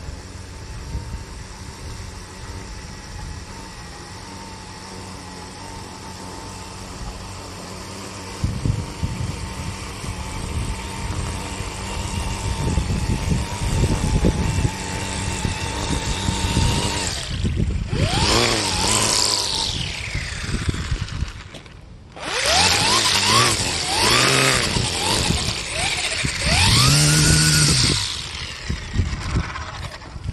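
Hart 40V brushless battery string trimmer running with a steady high whine while cutting grass along a curb. In the second half it gets much louder, its pitch repeatedly sweeping up and down as the motor speeds up and slows. There is a short drop just before the loudest stretch.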